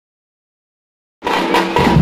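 Silence, then about a second in a tamte frame-drum ensemble starts up abruptly: fast, loud stick strokes on the drums over a steady low bass.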